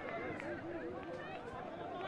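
Faint, distant voices calling out across a rugby league field, several at once, as players and sideline spectators shout during play.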